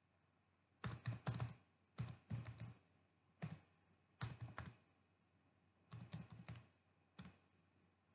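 Computer keyboard typing: short runs of keystrokes, six or so runs with pauses between them, as numbers are entered.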